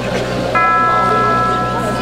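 Bell-like chime: a chord of ringing bell tones struck once about half a second in and left to ring on, with the previous stroke still fading as it begins.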